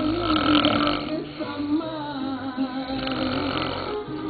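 A man snoring loudly through an open mouth, with a long rasping snore in about the first second, over a song playing in the background.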